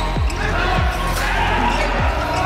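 A volleyball being played in a rally in an indoor arena: dull thuds of ball contacts over arena music and crowd noise.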